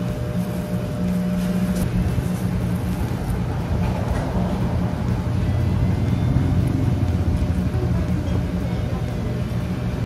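A steady low engine rumble with a droning hum, like a motor vehicle running nearby, growing a little louder midway.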